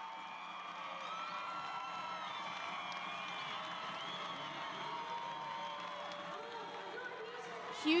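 Stadium crowd cheering and clapping after a late winning goal, a steady din of many voices at an even level.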